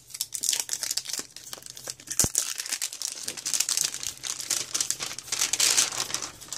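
Clear plastic shrink wrap being torn and pulled off a Pokémon card tin, crinkling in quick, irregular crackles, with one sharp click about two seconds in.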